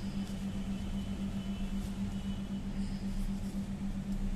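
A steady low hum over a low rumble: background room noise with no speech.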